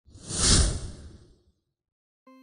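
A single whoosh sound effect: one swell of rushing noise that rises quickly, peaks about half a second in and fades away before halfway through.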